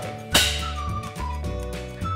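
A film clapperboard snapped shut once about a third of a second in, a single sharp clap, followed by a short whistle-like tone that falls slightly, over background music.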